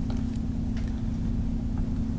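Steady low background hum with a constant low tone, like a computer fan or electrical hum under the recording, with a few faint clicks.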